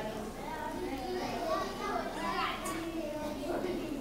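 Children's voices chattering together in a large hall, a steady murmur of overlapping speech.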